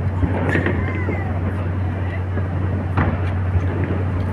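Distant aerial fireworks bursting and crackling over a steady low rumble, with sharper bangs about half a second in and again about three seconds in.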